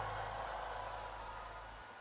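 The tail of a low held string chord from an orchestral intro dying away slowly under a faint hiss, its low note stopping near the end.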